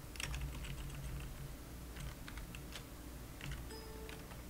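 Computer keyboard being typed on: irregular, scattered keystrokes over a steady low hum.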